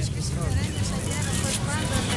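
Crowd murmur with faint, overlapping voices over a steady low rumble.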